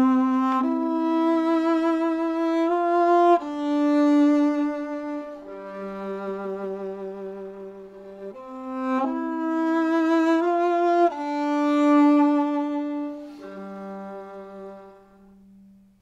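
Solo viola playing a slow, singing melody in long bowed notes with vibrato, one note at a time. The phrase comes round twice and fades away at the end.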